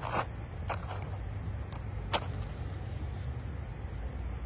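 A match struck on the striker of a matchbox: a few short scrapes, the sharpest about two seconds in, and the match lights.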